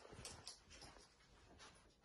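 Near silence: room tone, with a few faint, soft sounds in the first second and once more near the end.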